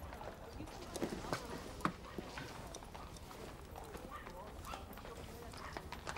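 Faint, irregular light knocks and clicks of kitchen handling sounds over a low steady hum, a few of them a little sharper in the first two seconds.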